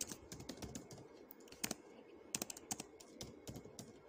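Quiet, irregular clicking of computer keyboard keys as a word of code is deleted and a new one typed.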